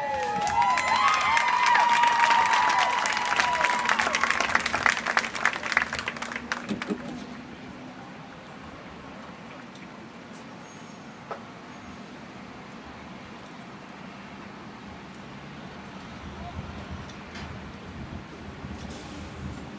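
Stadium crowd applauding and cheering with rising and falling whoops, dying away about seven seconds in to a quiet open-air murmur.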